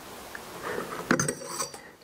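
Stainless steel plunger dispenser being lifted out of the top of a cordless oxalic acid vaporizer: metal scraping and clinking against the vaporizer's metal body, with sharp clinks and a short bright ring a little past halfway.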